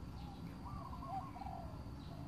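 A bird calling: a short run of warbling notes about a second long near the middle, over a low steady background rumble.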